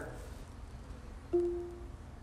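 A single electronic chime about a second and a half in: one steady pitched tone that starts suddenly and fades over about half a second, against quiet room tone. It is the voice-assistant setup acknowledging a spoken command to dispense water from a touchless kitchen faucet.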